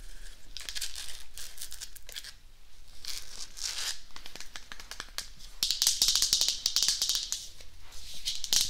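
Long fingernails tapping and scratching along the branches of a small glittery artificial tree, a string of light clicks and rustles. About five and a half seconds in it turns into louder, rapid tapping.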